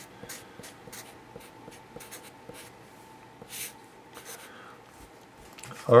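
Felt-tip Sharpie marker writing on paper: a run of short, faint scratching strokes as characters are drawn.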